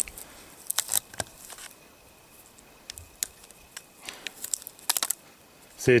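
A lubricated latex condom being stretched and worked over a Glock pistol's grip and magazine base, giving scattered small clicks, crinkling and snaps as the rubber strains and tears.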